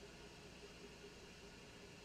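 Near silence: faint room tone with a steady hiss.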